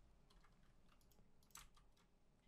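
Near silence with a few faint computer keyboard clicks, in two small clusters, the second and loudest a little past the middle.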